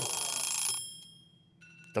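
A timer alarm ringing, signalling that the two-minute quiz round is up. It cuts off just under a second in and dies away.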